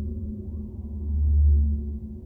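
Behringer DeepMind 12 analogue polyphonic synthesizer sounding a deep, sustained low note, with a steady tone higher up and a faint rising glide about half a second in. It swells about a second and a half in, then starts to fade as the keys are let go.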